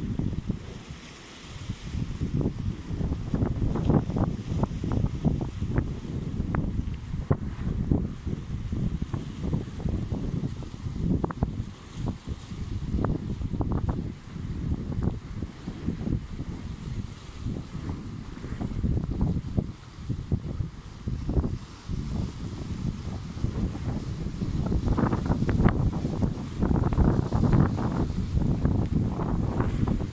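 Sea wind buffeting the microphone in uneven gusts, a low rumbling noise over the wash of small waves breaking on rocks. The gusts grow stronger a few seconds before the end.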